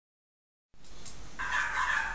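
A faint, drawn-out high animal call begins about a second and a half in.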